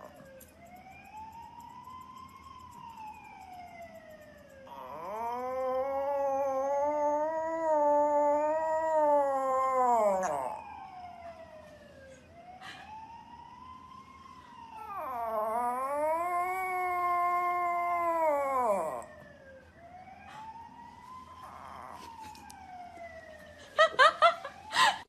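A small poodle howling twice, each howl about five seconds long and wavering in pitch. Between the howls come faint, siren-like rising-and-falling wails that the dog answers.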